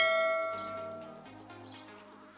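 A single bell-like ding rings and fades away over about a second and a half: the notification-bell chime of a subscribe-button overlay animation. Faint background music continues underneath.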